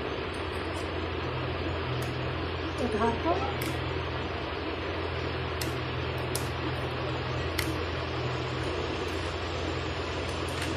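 A steady low hum and hiss, with a few faint sharp clicks as a kitchen knife trims the thick stems and veins from taro leaves over a wooden board.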